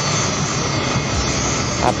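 Engine machinery at a worksite running steadily: a low, even drone with a hiss over it.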